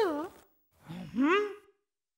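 Two short vocal sounds in a cartoon penguin's gibberish voice. The first, at the very start, falls in pitch. The second, about a second in, rises and then falls.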